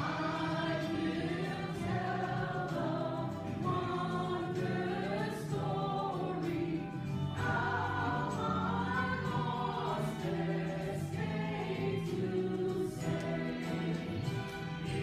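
A mixed church choir of women and men singing together, coming in right at the start and carrying on through.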